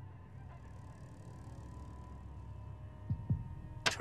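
Quiet room tone with a low steady hum. Near the end come two soft knocks and then one sharp click as a wooden xiangqi piece is set down on the board.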